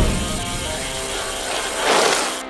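Music from a logo intro, with a swell of noise rising to a peak near the end as the logo appears.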